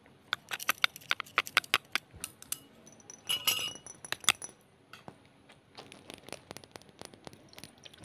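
A utensil clinking rapidly against glass, several sharp strikes a second for about two seconds. Then comes a brief rush of noise and one loud clink, followed by softer, scattered taps.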